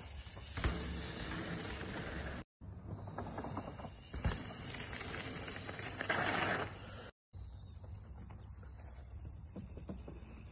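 Mountain bike riding down a dirt trail: a steady rush of tyre and riding noise with a few sharp knocks and rattles. It cuts out abruptly for a moment twice.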